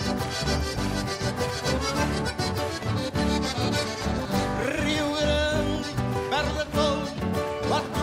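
Live gaúcho regional music: an instrumental passage led by accordion over acoustic guitars and a steady beat. About halfway through, a held, wavering melody line comes in on top.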